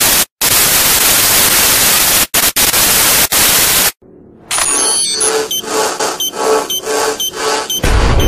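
Loud TV static hiss that cuts out briefly a few times and stops about four seconds in. Then comes a rhythmic run of electronic beeps and glitchy digital tones, about two pulses a second.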